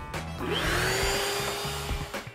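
Shop-Vac wet/dry vacuum switched on about half a second in. Its motor whine rises quickly in pitch, then runs steadily with a rush of air, fading near the end.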